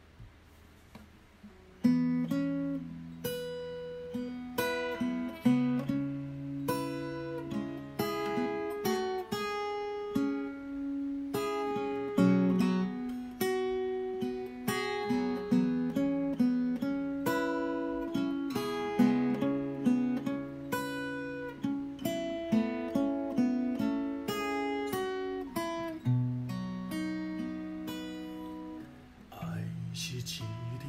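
Acoustic guitar playing an instrumental introduction of plucked notes and chords, each note ringing and decaying, starting about two seconds in.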